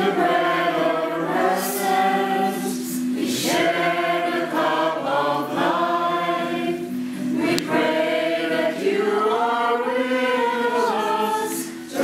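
A congregation of many voices singing a hymn together, in sung phrases with short breaks between them about 3 s and 7.5 s in.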